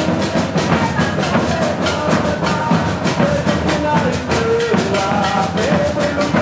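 Live maracatu drumming: large rope-tensioned alfaia bass drums and snare drums keep a dense, steady rhythm, with voices singing a melody over the drums.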